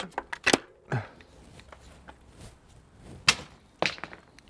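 A few sharp clicks and knocks with quiet gaps between, the loudest about half a second in and again near the end: hard parts being handled as the old rear shock comes off a mountain bike and the new one goes in.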